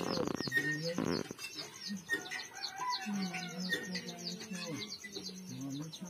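Small birds chirping over and over in a fast, even string, with chickens clucking lower underneath. Two short harsh noises sound in the first second and a half.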